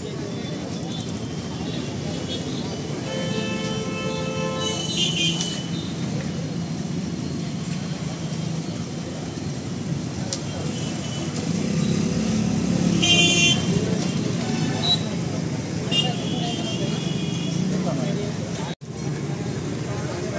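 Road traffic running steadily, with a vehicle horn sounding for about a second and a half a few seconds in and a shorter, higher-pitched toot about thirteen seconds in.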